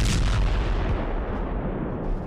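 Sound effect of a huge explosion: a sudden blast at the very start, then a deep rumble that slowly fades.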